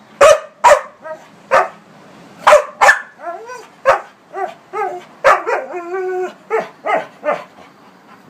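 A husky and a Staffordshire bull terrier barking and howling together: about a dozen sharp barks, with short pitch-bending howls between them and one longer drawn-out howl about six seconds in.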